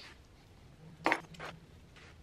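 A man's voice saying two short words, "Now I", over otherwise quiet room tone.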